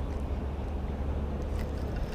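Wind rumbling on an action camera's microphone, a steady low rumble with no distinct events.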